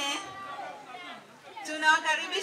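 Speech only: a woman talking into a microphone trails off, there is about a second of low background chatter, and speech starts again near the end.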